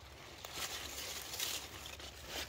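Soft rustling of radish leaves and stems as a hand moves through the plants, in a few faint surges.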